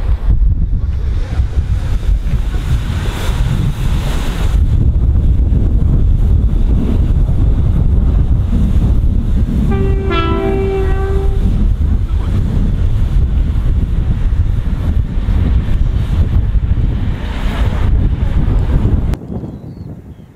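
Wind buffeting the microphone with a heavy low rumble. About halfway through, a train horn sounds one steady note for about a second and a half.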